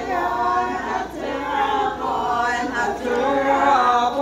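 A group of Naga women singing together unaccompanied, several voices overlapping in harmony.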